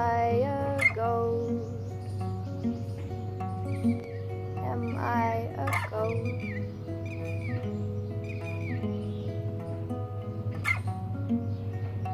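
Acoustic guitar playing a song, with a woman's voice holding a note near the start and sliding through a wordless sung phrase about five seconds in. Short high chirps sound now and then over the guitar.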